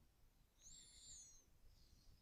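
Near silence: faint room noise, with one faint high-pitched whistle-like call lasting about a second in the middle.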